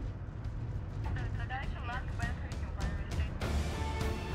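Steady low rumble of the moving prison-transport van, with a short stretch of voice-like sound in the middle. About three and a half seconds in, orchestral film score swells in over the rumble.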